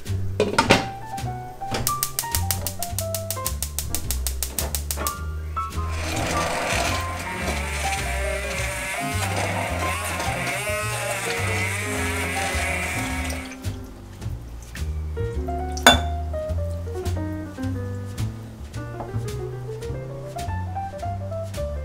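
Background music with a steady bass line. Over it, in the middle for about seven seconds, a stick blender whirs, puréeing butternut squash soup in the pot.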